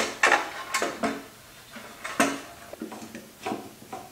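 Hard plastic clicks and knocks from handling the Jeep Wrangler JK's taillight wiring plugs in the taillight opening: several sharp ones in the first second, a strong one about two seconds in, then lighter taps.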